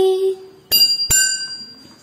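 A sung note trails off, then small hand cymbals are struck twice, about half a second apart, each strike ringing on and fading.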